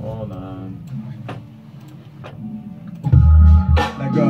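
Playback of a hip hop track: the delay echoes of a sung vocal phrase fade out over the first second. About three seconds in, a heavy bass note and a loud drum hit come in.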